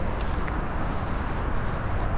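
Steady, even noise of highway traffic passing behind a sound wall, with no separate events standing out.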